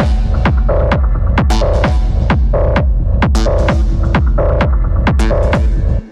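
Electronic dance music from a DJ mix: a steady kick drum at about two beats a second with a short synth chord stab repeating about once a second.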